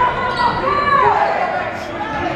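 A basketball being dribbled on a hardwood gym floor during live play, under players' and spectators' raised voices calling out.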